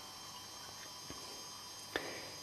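Faint steady background hiss with thin high electronic whines, and a soft click about a second in and another near the end.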